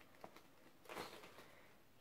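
Near silence: room tone, with one faint brief sound about a second in.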